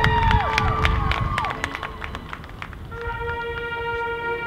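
Marching band field show: gliding, arching tones and sharp clicks that die down, then about three seconds in a steady held chord begins.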